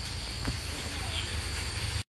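Steady high-pitched insect chirring over a low background hum, with one faint click about half a second in.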